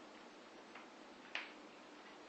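Quiet room tone with a single short, sharp click about a second and a half in.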